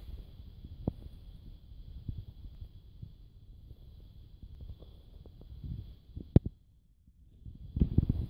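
Low handling rumble with a few faint scattered clicks, and one sharper double click a little after six seconds in.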